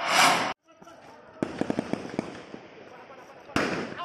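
A brief whoosh at the start, then from about one and a half seconds in a rapid string of sharp cracks of distant gunfire, with a few weaker ones spaced out after; the shots are police warning shots fired to break up a clash. Another short rush of noise comes just before the end.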